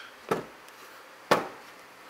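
A short click, then two wooden knocks about a second apart, the second the loudest, as a hand pushes down on the clamp rack's wooden shelf. The shelf gives on its newly fitted piano hinge and still sags under the load.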